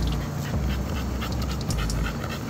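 An American bully puppy panting in quick, short breaths, over a low rumble.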